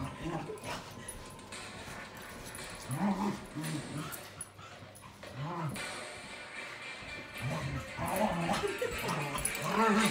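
A small curly-coated dog whimpering and yipping in excitement, over background music and a woman's voice.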